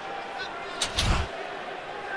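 Hockey arena crowd noise, steady and low, with a sharp double knock and a short low thud a little under a second in.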